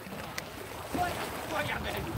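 Steady wind and small waves lapping against shoreline rocks, with a few brief voice sounds about halfway through.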